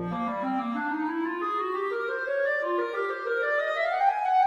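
Solo clarinet playing a long rising run, climbing stepwise from its low register to its upper register over about four seconds and smoothing toward a glide near the end. The piano drops out just after the start, leaving the clarinet unaccompanied.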